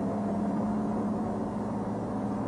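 Steady low engine hum of a vehicle, heard from inside it.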